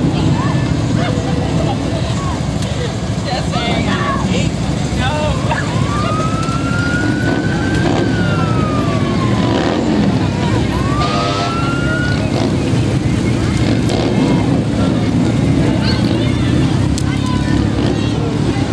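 An emergency-vehicle siren winds up about six seconds in, falls away and winds up once more, lasting about six seconds. Beneath it are people talking and the low rumble of slow-moving parade vehicles.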